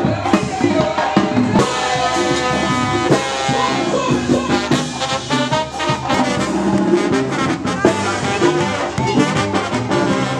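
Oaxacan brass band playing, with trumpets, trombones and drums keeping a steady beat.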